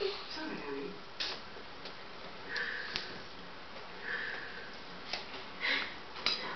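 A few short, breathy sniffs or nasal breaths and a couple of light, sharp clicks, over faint background speech.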